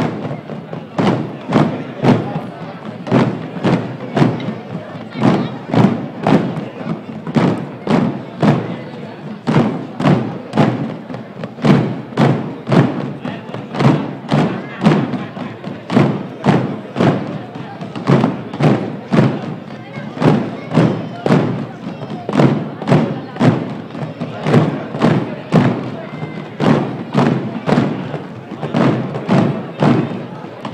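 A drum beating a slow, steady marching pulse of about two even strokes a second.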